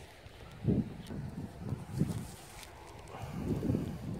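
Gloved fingers rubbing dirt off a thin dug-up coin: faint, irregular soft scuffs and low muffled knocks close to the microphone.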